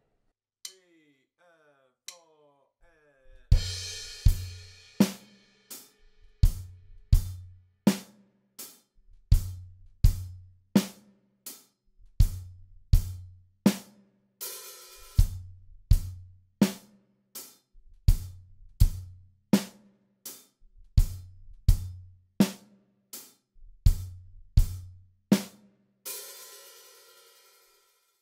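Acoustic drum kit playing a steady, unhurried rock beat, starting about three and a half seconds in with a crash: kick and snare under steady closed hi-hat strokes. Twice, at about 15 s and again near the end, the hi-hat is opened and rings as a sizzle at the end of the two-bar phrase.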